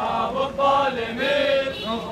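Men's voices chanting a protest slogan in rhythm.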